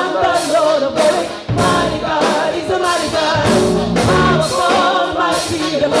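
Gospel choir singing live with a band of electric bass, drum kit and keyboard, over a steady beat with regular cymbal strokes.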